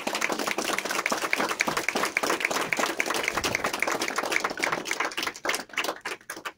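Audience applauding: many people clapping by hand, thinning out and dying away near the end.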